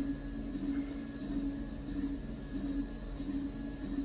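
Steady low background hum with a faint click about a second in.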